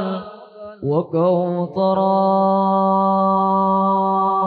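A man singing sholawat unaccompanied, with no frame drums: a few quick melismatic turns, then one long note held steady from about two seconds in.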